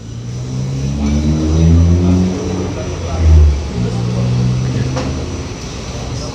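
A nearby motor vehicle engine running and revving: its pitch rises over the first couple of seconds, it is loudest about three seconds in, then it eases off. A single short click comes about five seconds in.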